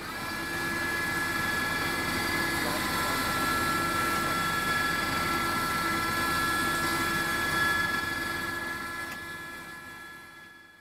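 Steady machine hum with a constant high whine from sewer inspection equipment as a wheeled camera crawler is lowered into a manhole; it fades in at the start and fades out near the end.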